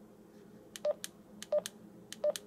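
Keypad of a Retevis RT52 DMR handheld radio: two button presses about two-thirds of a second apart, each giving a short key-tone beep with small plastic clicks, the radio's confirmation of each press as its menu scrolls.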